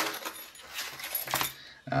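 Nylon organizer pouch being flipped open by hand: fabric and zipper rustling with a few sharp clicks, and a key on its key leash jingling.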